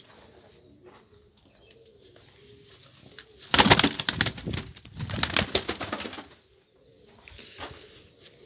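Domestic pigeon taking off and flapping its wings: a loud, rapid run of wingbeats starts about three and a half seconds in and lasts nearly three seconds, with a short break in the middle.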